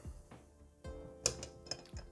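Soft background music, with a couple of light clicks from hard plastic model-car chassis parts being handled and fitted together, about a second in and again just after.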